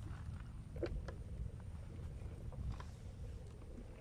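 Low, steady rumble of wind and water on a kayak-mounted camera's microphone, with a few faint small clicks and knocks from the kayak about a second in and again near three seconds.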